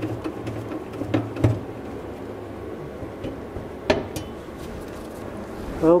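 Sheet-metal access cover over a car's steering box being unscrewed and lifted off, with a few light metallic clicks and clinks. The loudest comes about four seconds in.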